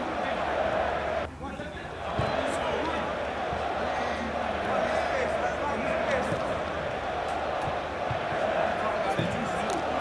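Sounds of a small-sided football game: players calling out over a steady background hiss, with a few dull thuds of the ball being kicked.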